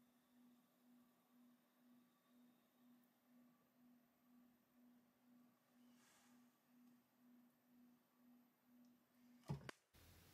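Near silence, with a faint low hum from the electric potter's wheel turning, pulsing a little over twice a second. A brief knock comes just before the end.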